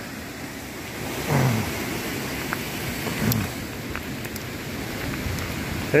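Mountain bike rolling along a gravel track beside a fast river: a steady rushing noise of tyres on gravel, water and wind, with a few small clicks. There are two short falling vocal sounds from the rider, about a second in and again near the middle.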